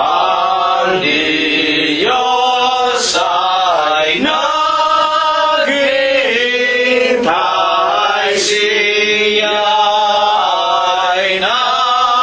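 Voices singing a slow hymn, with long held notes that glide between pitches.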